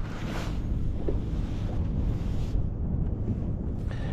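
Wind buffeting the microphone on an open boat over choppy water: a steady low rumble under a hiss that eases after about two and a half seconds.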